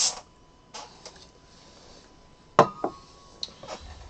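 A sharp clack of a hard object knocking on a table about two and a half seconds in, with a short ringing tone after it and a second lighter knock right behind, among a few smaller clicks and faint rustling as debris is cleared from the tabletop.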